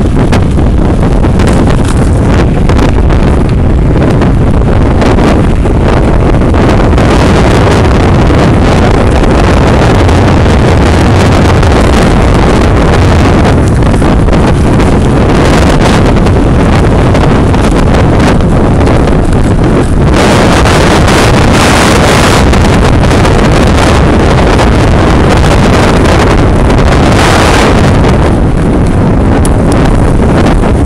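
Wind rushing over the microphone of a camera carried on a moving mountain bike: a loud, steady buffeting rush that turns hissier for a few seconds about two-thirds of the way through.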